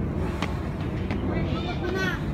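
Footsteps on concrete trail steps and faint voices of hikers near the end, over a steady low rumble.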